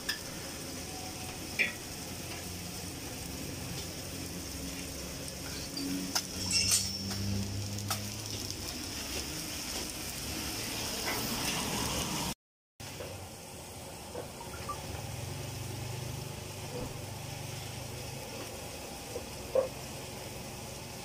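Steady sizzling of food frying on a flat-top griddle, with a few light clinks of utensils. The sound cuts out briefly about halfway through.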